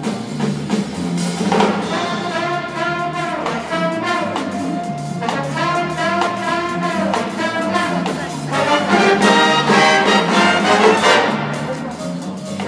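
Big-band jazz ensemble playing live, its trumpets, trombones and saxophones sounding in swelling chords over the rhythm section. The horns are loudest late on, before easing off near the end.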